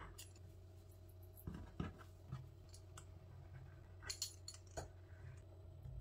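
Faint, scattered clicks and light clinks of a metal kitchen utensil against dough and a wooden countertop, a few at a time, the sharpest about four seconds in, over a low steady hum.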